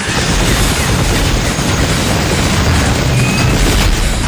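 Cannon blast and explosion sound effect: a loud boom that starts at once and keeps going as dense noise with a heavy low end, over trailer music.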